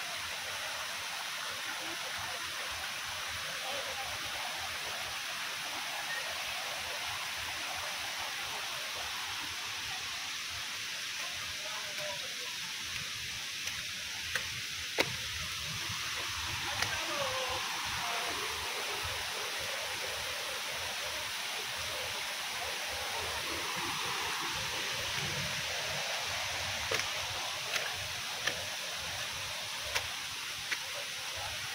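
Steady rushing of a shallow, rocky rainforest river, with a few faint sharp clicks in the second half.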